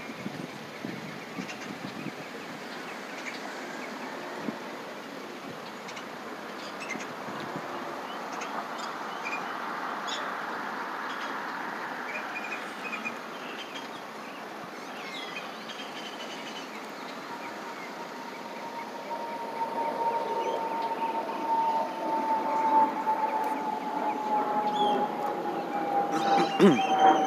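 Outdoor street traffic noise with a vehicle passing about ten seconds in; over the last third a single steady whine slowly falls in pitch as the noise grows louder.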